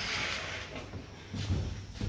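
A soft rustle of heavy fabric as a curtain is pushed aside, fading after the first moment into faint handling noise.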